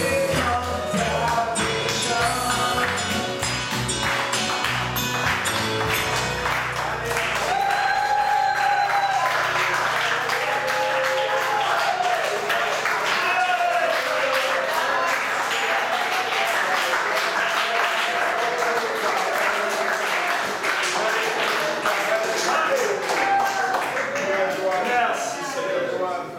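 Live worship band playing with the congregation clapping along. After about six seconds the band's bass and beat drop out, and the congregation keeps clapping while many voices call out.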